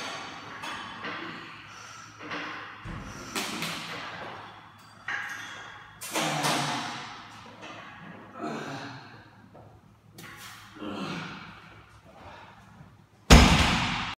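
Heavily loaded barbell (212.5 kg) during deadlift reps: the iron plates thud and clank on the floor several times, each knock ringing briefly, with the loudest impact near the end.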